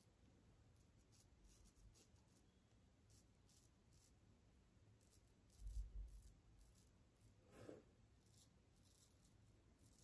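Faint, short scratchy strokes of a razor with a Feather blade cutting beard stubble on the cheek. There is a low thump about six seconds in and a short soft sound just before eight seconds.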